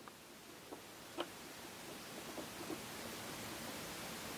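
Faint steady hiss with a few small, soft clicks from fingers handling tiny resin-cast model parts, the clearest about a second in.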